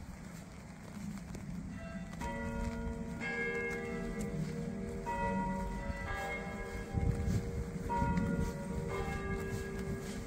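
Bells ringing, starting about two seconds in. A new note is struck about once a second and each rings on over the next, over a low background rumble.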